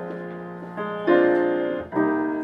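Grand piano playing a jazz introduction in chords: one chord fades away, then new chords are struck just under and just over a second in, each ringing and dying away, with another struck at the very end.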